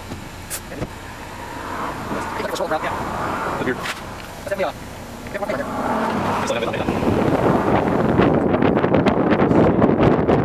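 Indistinct voices over a low rumble, then from about seven seconds in, wind buffeting the microphone, louder and rough.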